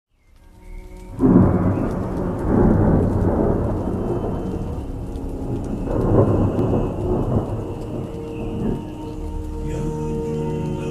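Thunderstorm: rolling thunder over steady rain, fading in over the first second, with the loudest clap about a second in and another swell of rumbling around six seconds.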